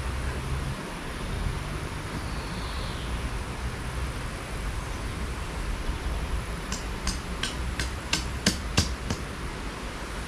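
Steady low rumble with, in the second half, a quick run of about eight sharp clicks over two seconds.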